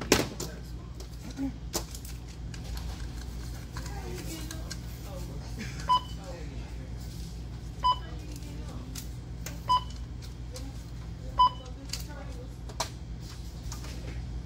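Checkout barcode scanner beeping four times, about two seconds apart, as manufacturer coupons are scanned at the register. A short knock sounds at the start over a steady low hum.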